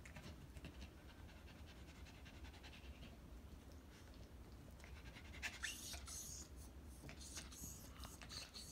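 Faint panting from a small dog close by. About halfway through come quick, scratchy, rustling sounds as it climbs onto a blanket-covered lap.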